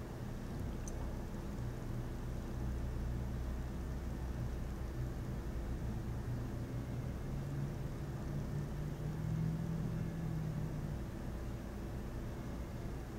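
A steady low hum with a rumble beneath it. A slightly higher tone in the hum comes up in the second half and fades near the end.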